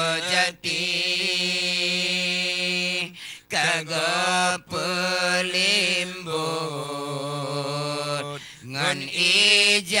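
Two male voices chanting Acehnese meudike, a devotional dhikr chant, without instruments: long drawn-out notes with ornamented, wavering pitch, broken by a few short breath pauses.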